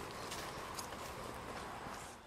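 Faint footsteps of someone walking on a woodland trail, a few soft crunches over a steady hiss.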